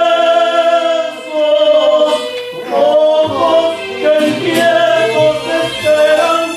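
Devotional song sung by voices: a long held note, then a moving melody. A low bass accompaniment comes in about three seconds in.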